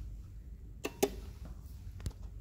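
Elevator hall call pushbutton clicking twice in quick succession as it is pressed and lights up, over a low steady hum.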